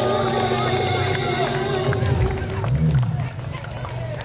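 The last held sung note and acoustic guitar chord of a busking song ring out and fade over the first two seconds. After that come the chatter and scattered voices of the listening crowd.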